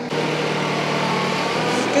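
Summit compact tractor engine running steadily while the tractor works its front loader.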